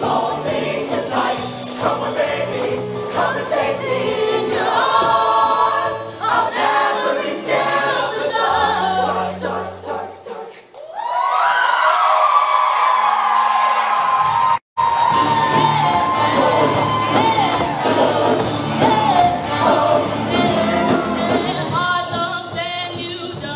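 Show choir of mixed voices singing with instrumental accompaniment. About ten seconds in the music thins out, then the voices rise into one long held note, and the sound cuts out for an instant a few seconds later.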